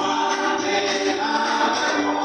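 A choir singing, several voices holding long, overlapping notes at a steady level.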